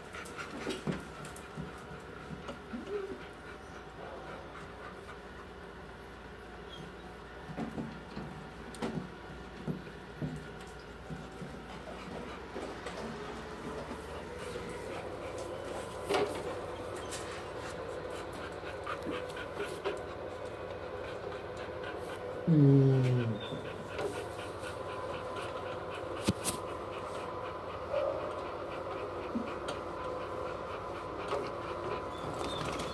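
Dog panting steadily while being petted, over a steady background hum. About three-quarters of the way through, a loud short call drops in pitch.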